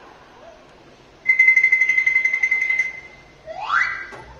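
A long, steady, high whistle held for about a second and a half, then a short whistle sliding upward in pitch near the end.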